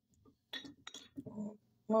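A few light clinks and taps from a wooden spoon against a container while scooping sour cream, starting about half a second in.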